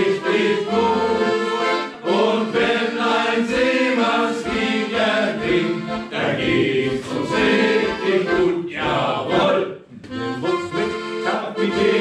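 Piano accordion playing a sea-shanty tune in chords, with a brief gap about ten seconds in.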